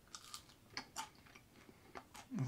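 A person biting and chewing a crispy air-fried russet potato fry: a handful of faint, short crunches, most of them in the first second.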